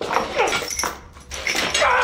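A man crying out in pain as he strains against a steel bear trap clamped on his leg: short falling cries, then a longer wavering yell near the end, with a few sharp metallic clinks.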